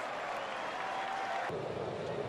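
Ballpark crowd noise: a large stadium crowd's steady hubbub as fans react to a bat flying into the seats. The crowd sound changes abruptly about one and a half seconds in.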